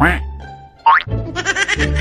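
Playful background music with cartoon sound effects laid over it: a falling whistle-like glide at the start, a quick rising glide about a second in, then a high, wavering, voice-like squeak.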